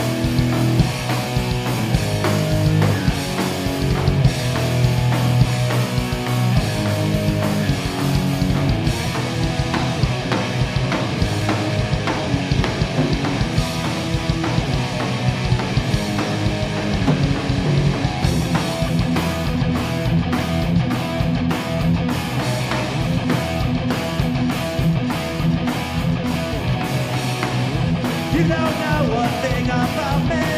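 A punk rock band playing live on electric guitars, bass guitar and drum kit, kicking in at full volume right at the start and playing a fast, driving cover.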